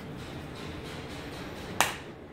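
Capacitor-discharge welding machine firing with a single sharp snap near the end, during repeated stress-test cycling.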